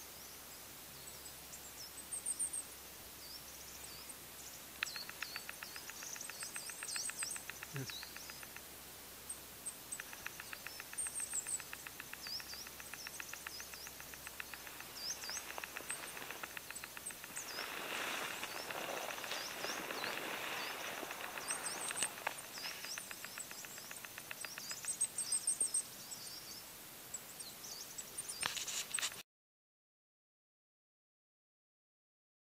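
Wild songbirds in pine trees: many short high chirps and calls throughout, with a rapid, even trill running for several seconds twice in the first half. A soft rush of noise swells around the middle, and the sound cuts off suddenly just before the end.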